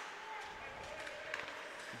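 Faint hockey-arena background picked up by the broadcast microphones: a low murmur of crowd voices with a few light knocks.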